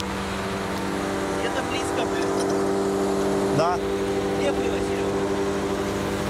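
The engine of an aerial lift truck running at a steady speed, a steady hum with several even tones that grows a little louder after the first second.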